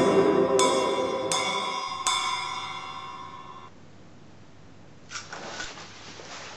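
Soundtrack music: four struck, ringing notes, one about every 0.7 s, whose tones hang on and fade out past the middle. A brief rustle comes near the end.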